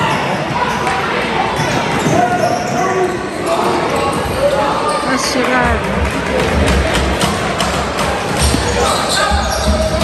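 Box lacrosse play in an arena: players' voices shouting across the floor, with a run of sharp clacks from sticks and the ball hitting the floor and boards, thickest in the second half.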